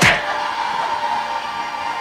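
Film trailer soundtrack: a loud hit right at the start, then sustained music tones held steady.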